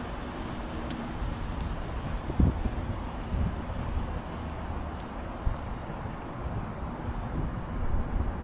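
Wind buffeting the camera's microphone outdoors, a steady low rumble, with two brief low thuds a couple of seconds apart.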